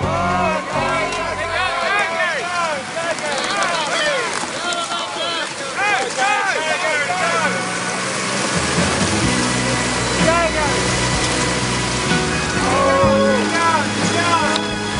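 Hagglunds BV206 tracked carrier's engine working hard as its tracks churn through slushy sea ice, with a low steady drone from about halfway through. Many short high squeals rise and fall over it in the first half.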